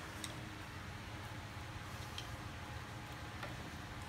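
A few faint metallic clicks from the rotary table and handles of a BCA jig borer being moved by hand, over a steady low hum.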